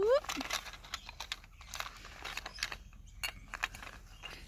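Plastic toy food pieces being picked up and set down, making scattered light clicks and taps, with a brief rising vocal sound at the very start.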